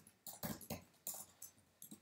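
Faint computer keyboard typing: a handful of separate keystrokes.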